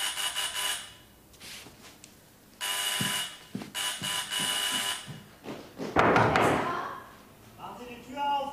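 Electric doorbell buzzing in irregular rings, a short ring and then two longer insistent ones. About six seconds in there is a loud, noisy burst.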